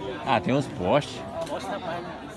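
Men's voices: two loud shouts in the first second, their pitch sweeping up and down, then quieter chatter.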